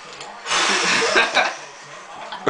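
A man's loud, breathy exclamation of dismay, about a second long, starting about half a second in.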